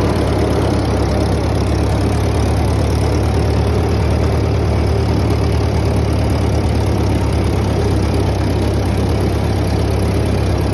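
Farmall B tractor's four-cylinder gasoline engine running steadily while it drives a Woods belly mower through grass, heard from the driver's seat. The sound is an even, deep drone with no change in pace.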